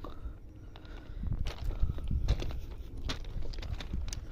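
Footsteps crunching on gravel railway ballast, irregular and uneven, over a low steady rumble.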